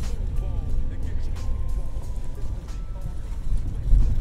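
Chevrolet Malibu driving over a rough dirt road, heard from inside the cabin: a steady low rumble from the tyres and suspension, with a few faint knocks.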